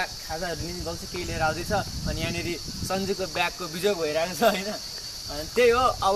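A man talking over a steady, high-pitched chorus of insects in the trees.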